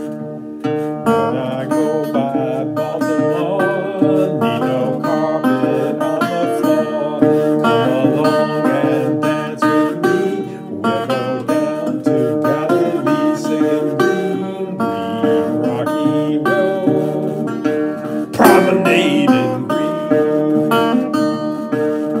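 Metal-bodied resonator guitar tuned to open D, played as a picked melody, with notes ringing on over one another.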